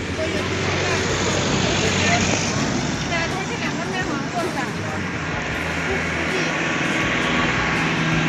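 Roadside traffic noise, a steady wash with a low engine hum, mixed with people's voices.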